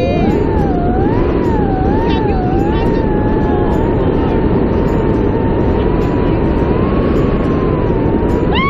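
Wind rushing over the helmet camera's microphone during a tandem parachute descent under an open canopy. Over it, a person holds a long high-pitched note that wavers up and down for the first few seconds, then steadies.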